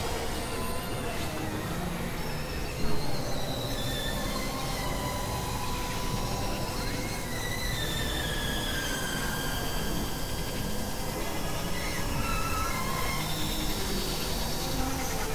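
Dense experimental electronic noise and drone: a steady noisy wash with thin high tones that glide slowly downward, and a brief loud hit about three seconds in.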